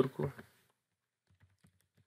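A few faint, quick computer-keyboard keystrokes in the second half, typing text into a form field, after the tail of a spoken word.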